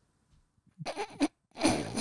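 A man bursting into laughter close to a microphone: a short choppy start about a second in, then a louder, harsh laugh.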